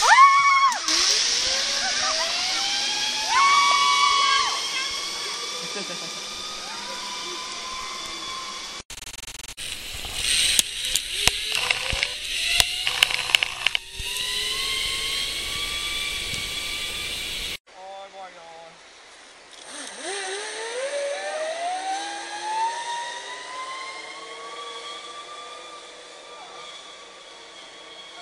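Zipline trolley pulleys running along a steel cable: a whine that rises in pitch as the rider picks up speed and then holds, heard again on a later run. In the middle comes a stretch of rushing noise with a quick run of clattering knocks.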